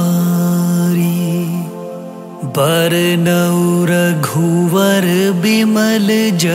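Hindu devotional song: a slow vocal line of long held notes with sliding pitch. It fades for a moment about two seconds in, then comes back in.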